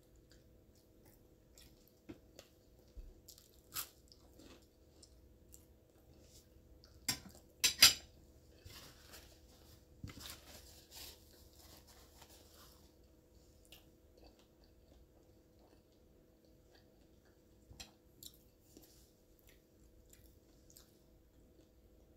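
Close-up eating sounds: a person chewing and biting crunchy toast, with scattered small crackles and clicks. A cluster of sharp crunches about seven to eight seconds in is the loudest part, followed by a few seconds of crackly chewing.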